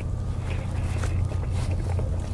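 Close-miked chewing of a chaffle breakfast sandwich, a few soft wet mouth clicks, over a steady low rumble.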